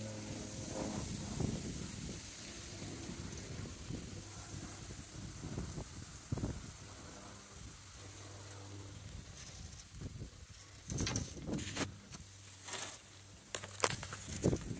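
Wind blowing on the microphone as a steady hiss, with a faint low steady hum underneath. A few short knocks and rustles come near the end.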